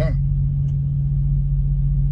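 Semi truck's diesel engine idling, heard from inside the cab: a steady low rumble with a fine, regular pulse.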